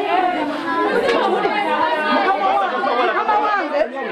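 Several adult voices talking loudly over one another at once, in a heated argument.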